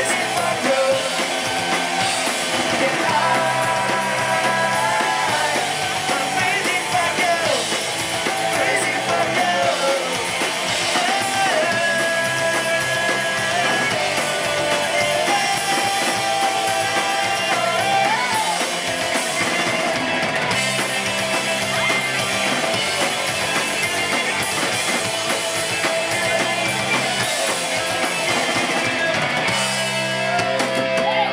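Punk band playing live: distorted electric guitars, bass and drums with sung vocals, one continuous loud song.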